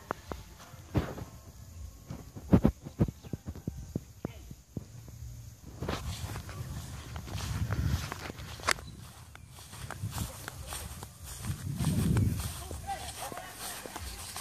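Footsteps on grass and irregular knocks from a hand-held phone being moved, with low rumbles that swell around the middle and again near the end.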